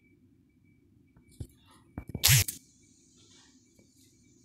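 African grey parrot preening: a few faint clicks, then one short, loud burst of noise a little over two seconds in.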